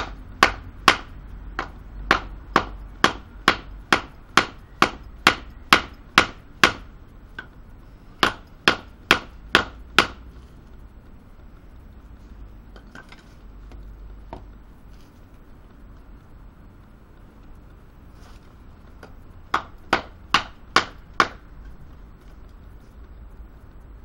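Batoning: a wooden baton striking the spine of a Böker Bushcraft Plus knife to drive the blade through a branch on a chopping block. About two sharp knocks a second for some ten seconds, a pause, then a shorter run of five knocks near the end.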